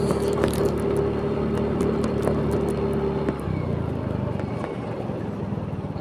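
Motor scooter's small engine running steadily under way, heard from the rider's seat along with road and wind noise. A little past halfway the engine note drops lower as the throttle is eased off.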